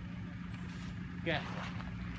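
Steady low engine hum, like a vehicle running close by, with a brief "okay, yeah" spoken over it.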